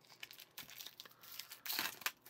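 Clear plastic shrink-wrap crinkling and tearing as it is peeled off a new deck of playing cards, with a louder crackle near the end.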